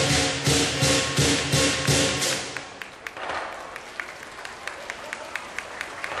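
Lion dance percussion band (drum, cymbals and gong) playing a steady beat of crashing strikes about three a second. About two seconds in the full band drops out, leaving only light, quick taps about four a second.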